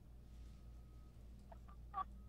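Near silence in a pause between speech: faint steady low hum of room tone, with a brief faint sound just before the end.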